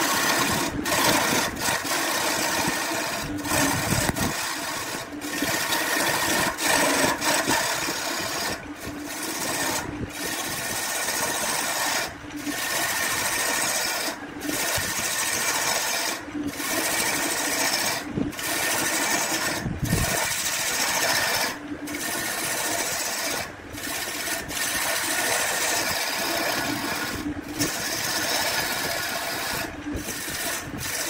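Burt wood lathe spinning a large wooden cylinder while a hand-held turning tool cuts its surface: a steady scraping hiss over the lathe's running tone. The sound is broken by short gaps about every two seconds.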